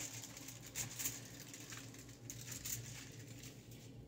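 Faint crinkling and rustling of aluminium hair foil being handled, a few soft rustles over a steady low hum.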